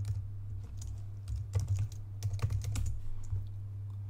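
Typing on a computer keyboard: irregular short runs of keystrokes, over a steady low hum.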